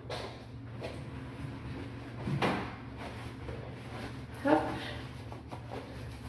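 A single short knock about two and a half seconds in, over a steady low hum.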